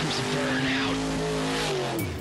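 Car engine held at high revs with tyres spinning and squealing in a burnout: a steady held note under a loud hiss that stops just before the end.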